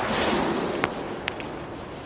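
Hiss of a Zena Match Cracker firecracker's struck friction head (the match-head pre-burner) burning, loudest at first and fading, with two faint sharp ticks about a second in. It is the lit 1.2 g black-powder banger before it goes off.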